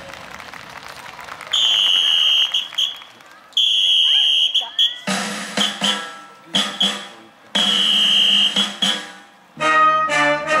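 Stage-show soundtrack over loudspeakers: after the music drops away, a high, steady whistle-like tone sounds three times, each about a second long, with short musical hits in between, and the full band music comes back in near the end.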